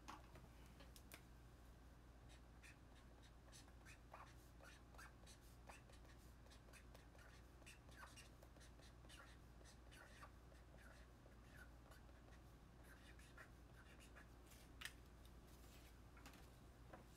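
Faint felt-tip marker writing on a paper strip: short scratchy strokes and small squeaks, one after another.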